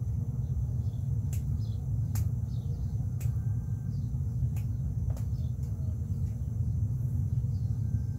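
Steady low outdoor rumble, with a few sharp clicks about a second apart in the first half and faint high chirps.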